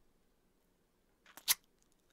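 Near silence, broken about a second and a half in by two or three short clicks from the mouth close to the microphone, a lip smack just before speech resumes.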